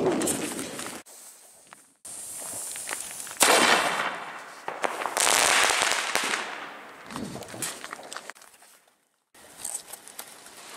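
Fireworks going off: rocket bursts and crackling. A sharp bang comes about three and a half seconds in, then a longer crackle a second and a half later.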